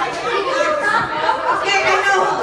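Several people talking at once: overlapping chatter of a gathered group in a room.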